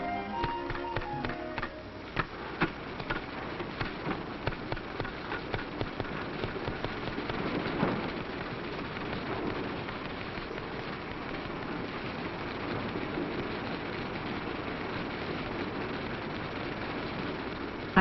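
A roomful of manual typewriters clattering at once, dense irregular key strikes over a steady mechanical noise. Orchestral music fades out in the first two seconds.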